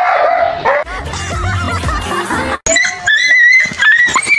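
A dog barking and yelping in alarm at a person in a fake tiger or lion costume, with music over it. The sound cuts off abruptly about two and a half seconds in, then gives way to high, drawn-out yelps.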